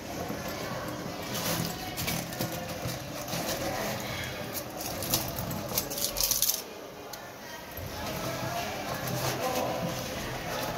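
A hand rummaging inside a fabric backpack: a busy run of rustling and crinkling that ends in a louder scrape and thump about six and a half seconds in, then quieter fumbling.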